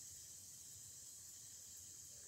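Near silence: room tone with a steady faint hiss.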